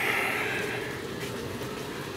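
Blower fan rated at over 600 CFM running on full speed, a steady rushing noise with a low hum that drops slightly in level about a second in.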